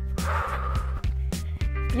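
Workout background music with a steady beat and bass line, with a brief rush of noise near the start.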